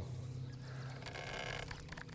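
Faint whir of a baitcasting reel's spool as line pays out on a frog-lure cast, over a steady low hum.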